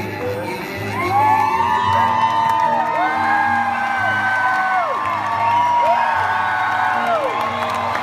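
Acoustic guitar strumming steady chords while audience members let out long whoops over it, several overlapping, each rising, holding and then sliding down in pitch.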